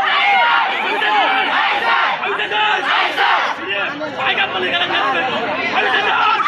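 A large crowd of students shouting slogans together, many voices overlapping loudly and continuously.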